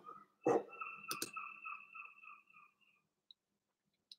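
A knock, then a ringing tone that wavers and fades out over about two seconds, with a sharp click about a second in.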